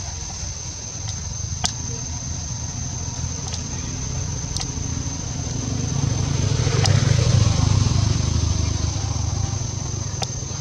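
Low engine-like rumble of a passing motor vehicle, swelling to a peak about seven seconds in and fading near the end, over a steady thin high whine and a few faint clicks.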